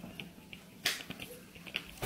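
Small clicks with one sharp click a little under a second in.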